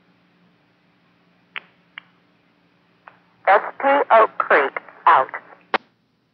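Railroad two-way radio: two short clicks, then a brief, unintelligible voice transmission lasting about two seconds, ending in a sharp click as the transmission drops. A faint steady hum sits under it until that click.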